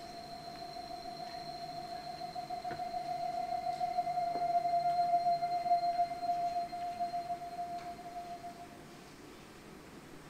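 A single held electronic keyboard note, an almost pure tone with faint higher overtones, swelling slowly to its loudest about halfway through and fading away about a second before the end.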